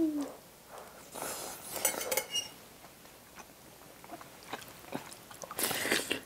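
A person chewing a spoonful of rice soaked in green tea with dried yellow croaker: soft, wet mouth sounds and a few faint clicks. A short hummed "mm" comes right at the start, and a brief hiss near the end.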